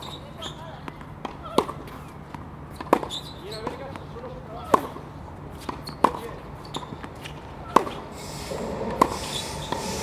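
Tennis rally: sharp racket-on-ball hits and ball bounces on a hard court, a loud crack roughly every second and a half with fainter bounces between. Near the end a steady rushing noise rises underneath.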